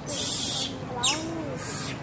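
Animal calls in a forest: a few short calls that rise and fall in pitch, and a quick falling whistle near the middle, over pulses of high hissing.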